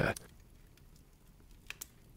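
The tail of a spoken line, then near silence broken by two faint short clicks near the end.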